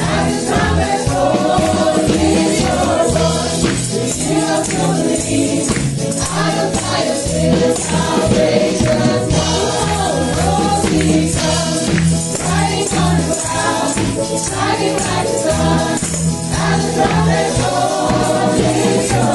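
Praise-and-worship song: women's voices singing into microphones over accompaniment with a steady beat, with a tambourine jingling along.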